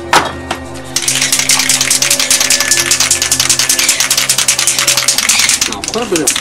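An aerosol spray paint can being shaken hard, its mixing ball rattling rapidly, starting about a second in and stopping near the end, over background music with held notes. A few sharp clicks come just before the shaking starts.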